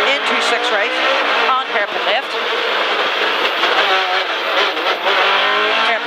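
Rally car engine heard from inside the cabin, accelerating hard with revs climbing and dropping back briefly at gear changes, over loud road and tyre noise.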